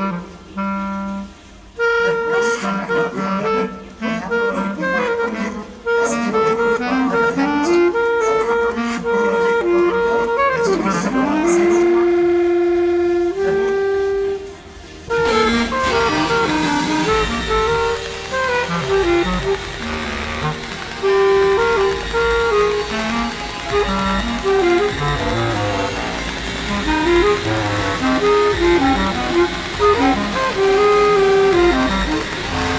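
Bass clarinet playing short, separated notes with a pitch glide, run through live electronics. About halfway through, the sound thickens into a dense, layered texture of many overlapping notes.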